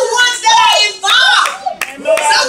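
Congregation voices calling out loudly in worship, with a few sharp hand claps near the end.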